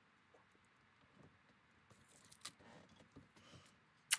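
Near silence, with faint soft rustles and small ticks of hands pressing modeling clay into a craft mold, growing a little busier over the second half.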